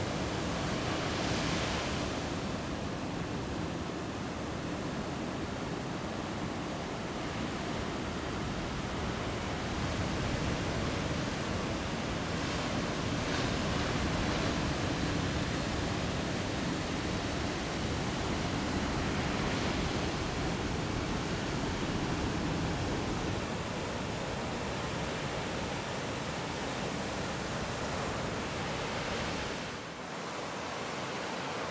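Ocean surf: waves breaking and washing in over the shallows as a steady rush of noise, swelling now and then as a wave breaks.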